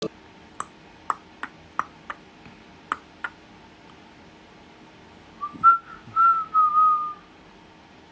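A person whistling a few short clear notes that slide slightly in pitch, the loudest sound, in the second half. Before it, a run of about seven short sharp clicks, irregularly spaced.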